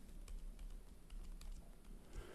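Light, irregular clicks of a stylus tip tapping and sliding on a tablet screen as an equation is written by hand.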